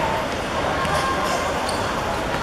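On-pitch sound of a youth football match: players calling out over steady background noise, with a couple of short knocks of the football being kicked.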